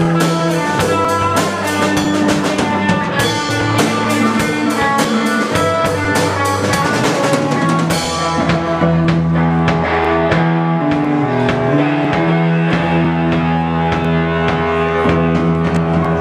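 Rock band playing live without vocals: two electric guitars through amplifiers over a drum kit. The drums play busy cymbal strokes for the first half, then the cymbals drop back about halfway through while the guitars keep on.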